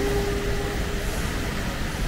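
Electric arc welding on a steel-bar gate: a steady hiss of the welding arc over low rumble, with a brief steady hum in the first second.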